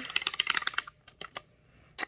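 Fast typing on a wireless backlit keyboard: a quick run of key clicks for about the first second, then a few scattered clicks.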